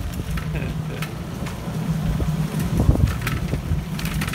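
Riding a bicycle along a rough sandy street: wind buffeting the microphone as a steady low rumble, with the bike's occasional light clicks and rattles.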